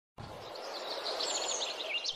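Birds chirping, a quick run of high chirps in the second second, over a steady hiss that fades in just after the start and slowly grows louder.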